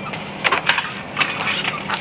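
Plastic toy track pieces being handled and snapped together by hand: a series of sharp clicks and clacks.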